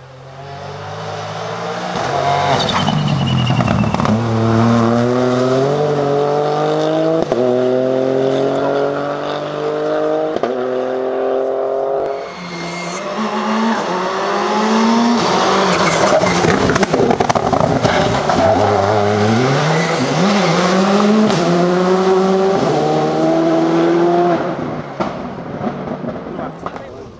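Rally cars at full throttle. First a car accelerates hard up through the gears, its engine note climbing and dropping back at each upshift about every second and a half. Then, after an abrupt change about twelve seconds in, a Škoda Fabia rally car accelerates through its gears in the same way, with its pitch falling briefly once or twice.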